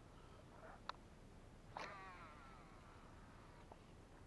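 Near silence with one faint animal call just under two seconds in: a single wavering call that slides down in pitch over about a second. Faint clicks come before and after it.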